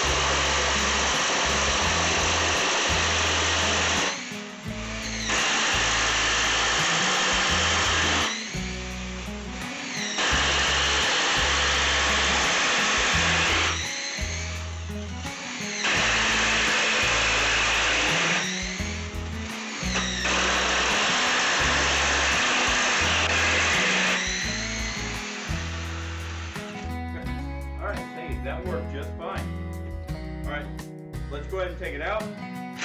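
Cordless Ryobi impact driver fitted with a keyless chuck adaptor, drilling into stacked wooden boards with a long 3/8-inch twist bit in five runs of a few seconds each, separated by short pauses. The drilling stops a few seconds before the end, and background music plays underneath.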